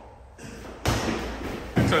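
A small basketball bouncing on a hard floor during a one-on-one drive to the hoop: two thuds about a second apart, with sneakers scuffling between them.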